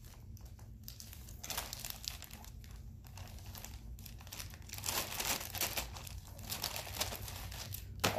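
Clear plastic sleeve crinkling and rustling as a graded comic slab is worked out of it. It starts about a second and a half in and gets louder about five seconds in.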